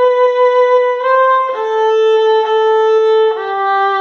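Solo violin playing a hymn's closing phrase, B, C, A, A, G: a held B, a short C about a second in, two A's, and a lower G near the end. The phrase is played with the faulty bowing, a fast, heavy up-bow on the short C eighth note that accents that C.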